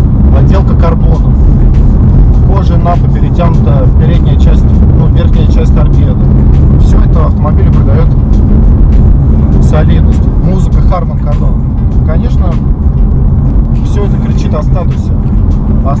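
Steady low rumble of a BMW M4 driving at highway speed, heard from inside the cabin, with a man talking over it.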